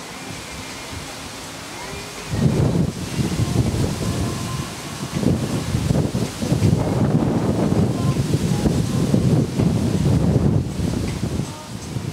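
Wind buffeting the camera's microphone in gusts: a low, rumbling rush that starts about two seconds in and dies down near the end.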